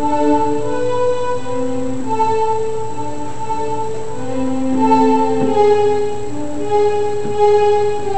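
Electronic keyboard playing a slow melody in held notes, two or three at a time, with a smooth string-like voice; the notes change about once a second and hold a steady pitch.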